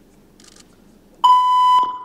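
Quiet hall, then about a second in a single loud electronic beep, one steady tone held for about half a second that trails off in the hall. It is the signal tone that opens the group's routine music.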